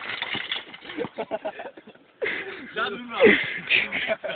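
People's voices talking and calling out, with no clear words.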